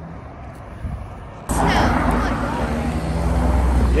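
Car traffic on a street close by, with a car passing the microphone. It comes in abruptly and loud about a second and a half in, with a heavy low rumble, after quieter outdoor background.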